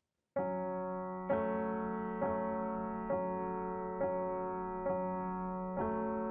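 Background music: sustained keyboard chords, a new chord struck about once a second, coming in just after a brief silence at the start.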